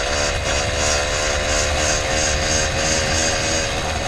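Small two-stroke motorized bicycle engine running at a steady cruising speed, its pitch holding level.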